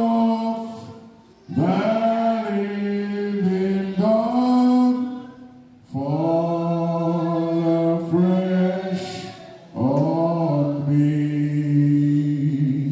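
A man singing slow, held phrases unaccompanied into a handheld microphone, each phrase two to three seconds long with short breaks between.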